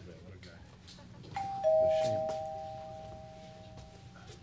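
Two-note ding-dong doorbell chime: a higher note about a second in, then a lower one a quarter second later, both ringing on and fading slowly over the next two seconds.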